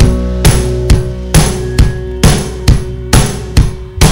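Live band music in a stripped-back passage without singing: drum hits on a steady beat, about two a second, over a held low note.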